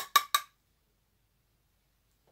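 Three quick, sharp plastic clicks in the first half-second as a clear plastic blush palette case is handled.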